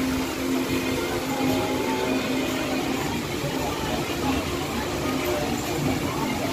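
Spinning flying-elephant carousel ride running with a steady low hum, over the murmur of crowd voices.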